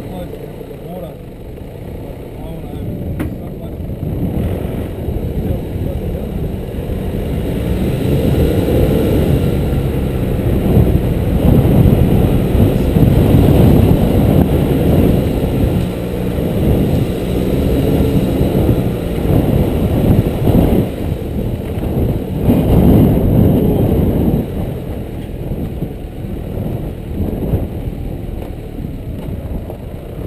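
Nissan Navara D22 4WD driving over a rough grassy hill track, a continuous low rumble of engine and drivetrain that grows louder through the middle and eases near the end. Indistinct voices are mixed in.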